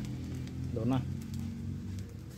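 A short spoken phrase about a second in, over a steady low hum.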